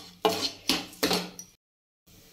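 Metal ladle scraping and knocking against a nonstick kadhai while stirring dry, crumbly roasted flour-and-sugar kasar. There are three strokes about half a second apart, then the sound cuts off suddenly.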